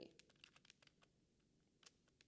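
Near silence: room tone with a few faint, scattered clicks.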